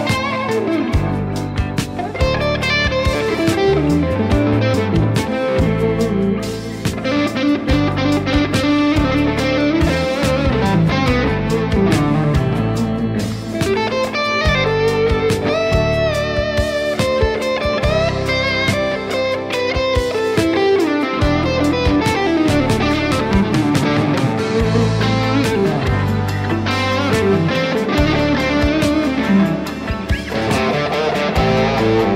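Electric guitar playing a fast lead solo with bent and sliding notes, over a steady accompaniment with a low bass line and a drum beat.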